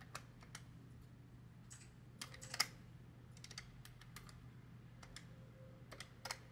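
Paper banknotes being handled and flipped through in a stack of cash: faint, irregular soft clicks and flicks, a small cluster about halfway through being the loudest.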